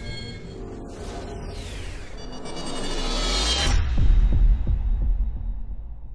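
Logo-animation intro sting: a whoosh swells over about three seconds into a deep booming hit, followed by a few low thuds that fade away.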